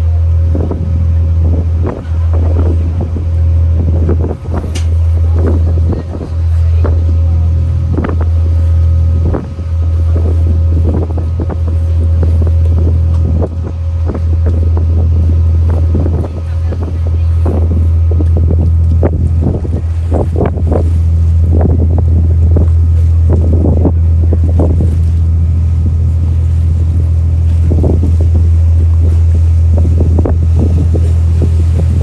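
Wind rumbling on the microphone aboard a moving boat. The rumble is loud and low, breaking briefly every second or two in the first half and steadier later, with the boat's engine and water noise underneath.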